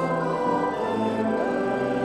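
Congregation singing a metrical psalm hymn, accompanied by an organ, in slow, evenly held notes that move in steps.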